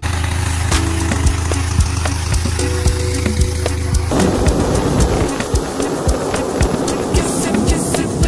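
Hot-air balloon inflator fan running, a steady low engine drone that turns into a loud rush of air about halfway through as the envelope is cold-inflated, under background music with a steady beat.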